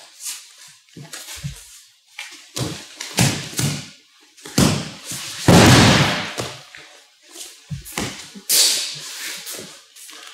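Bare feet scuffing and shuffling on foam judo mats during a grappling exchange, then a heavy thud with a rush of noise about five and a half seconds in as the partner is thrown with osoto gari and lands on the mat. A few lighter knocks follow near the end.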